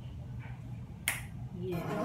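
Hands rubbing together over a low room hum, then one sharp, brief swish about a second in. Music fades in near the end.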